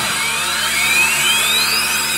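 Pachislot machine's presentation sound effect: a rising electronic whine that climbs steadily in pitch for about a second and a half, over the dense, steady din of a pachinko parlour.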